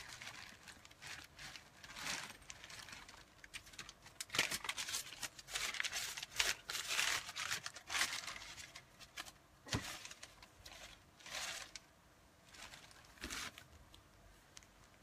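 Handling and rummaging among items on a shelf: irregular rustling and crinkling, busiest in the middle, with a few light knocks.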